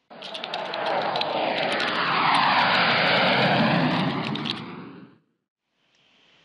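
Aircraft fly-by sound effect: a rushing engine noise that starts suddenly, swells to its loudest in the middle with a sweeping change in pitch, then fades out about five seconds in.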